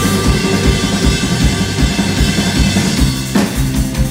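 Live rock band playing: a drum kit keeps a steady beat under electric bass and electric guitar.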